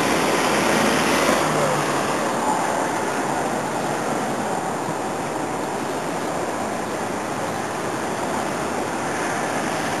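Steady outdoor city noise: an even hiss of street traffic, easing slightly after the first couple of seconds.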